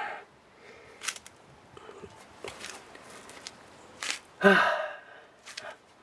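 A man sighs about four and a half seconds in: a quick breath in, then a voiced breath out that falls in pitch. A few faint short sounds come before it.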